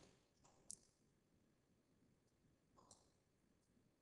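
Near silence, with two faint computer mouse-button clicks, one under a second in and one near three seconds in.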